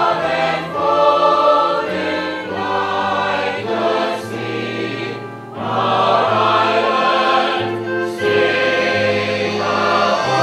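The full cast of a stage musical singing a choral anthem in long, held phrases, with a short break between phrases about five and a half seconds in.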